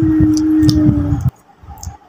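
A single long hummed vocal tone, a held 'mmm', sliding slightly down in pitch and breaking off a little over a second in, with low bumps from the phone being handled.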